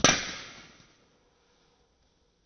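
A golf club striking a teed ball on a tee shot: one sharp crack right at the start, trailing off over most of a second.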